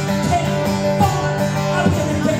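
Acoustic guitar played live through a concert PA, chords ringing steadily in an instrumental passage with no singing.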